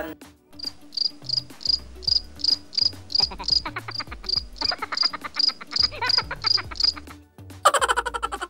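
Cricket chirps, a high chirp repeating evenly about three times a second, used as the comic 'crickets' sound effect for an awkward silence, over soft background music. The chirping stops about seven seconds in.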